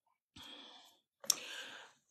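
A woman's breathing between phrases: a soft exhale, then a short mouth click and a breath in, just before she speaks again.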